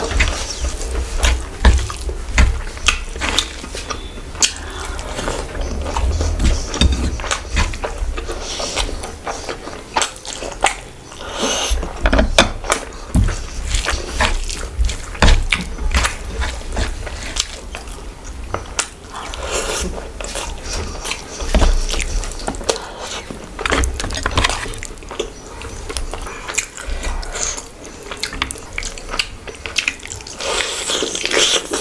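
Close-miked eating sounds: wet chewing and lip smacking of mouthfuls of rice and curry, mixed with fingers squishing rice and gravy together on the plate. The sounds come as many irregular clicks and squelches throughout.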